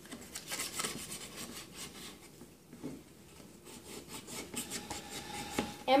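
Emery board rubbed over a painted wooden walking stick in quick back-and-forth scratchy strokes, sanding the paint down. The strokes come in two spells with a short lull around the middle.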